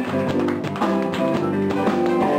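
Live blues band playing, led by electric guitars, with a quick run of sharp, choppy note attacks over sustained notes.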